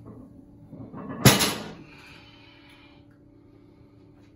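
A 455 lb barbell loaded with rubber bumper plates set down on the floor: one loud thump about a second in, with a short rattle dying away over about half a second.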